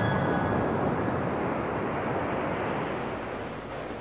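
A steady rushing noise with no notes in it, a noise-wash transition between two lofi beats tracks, fading slowly.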